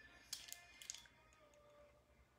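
Near silence, with a few faint clicks of a small plastic piece being handled in the first second.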